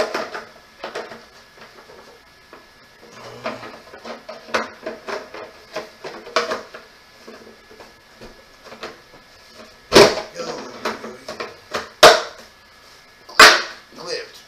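Molded plastic parts of a Step2 toddler chair being handled and fitted together, a scatter of light clicks and knocks, then three loud sharp knocks near the end as pieces are pressed or banged into place.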